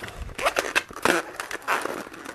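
Latex modelling balloon being handled and twisted: repeated rubbing and scraping of the rubber with several short squeaks.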